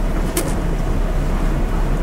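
Steady low hum and hiss of room background noise, with a brief faint hiss about half a second in.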